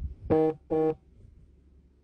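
Two short electronic beeps at the same steady pitch, about half a second apart, followed by faint low room hum.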